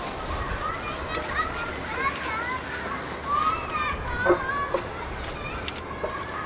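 Children playing out of sight, their high voices calling and shouting on and off.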